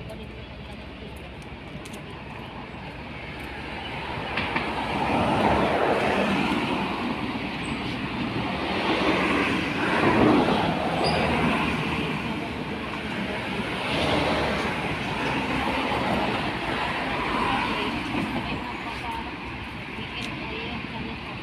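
Road traffic: vehicles driving past on the road beside the pavement, a noise that swells and fades, loudest about five to seven seconds in and again around ten seconds.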